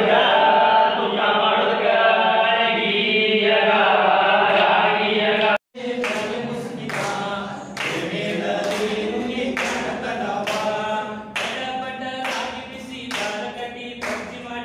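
A group of men singing together without instruments. After a sudden cut about six seconds in, the singing goes on with hand claps keeping time, about one clap a second.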